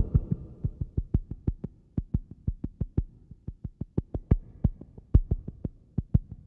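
Eurorack modular synthesizer playing sparse, short percussive hits after the fuller music cuts away at the start. Each hit is a low thud with a clicky top, several a second in an uneven, stuttering rhythm.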